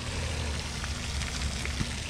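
Steady low rumble with an even hiss of outdoor background noise and a few faint ticks.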